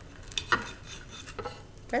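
Knife cutting through a thick slice of toast, the blade giving a few short clicks and scrapes against the plate.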